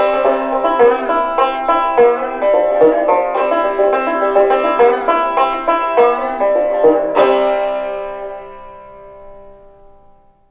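Solo banjo playing the closing bars of a song, plucked notes at a steady pace. It ends on a final strum a little after seven seconds that rings on and fades out.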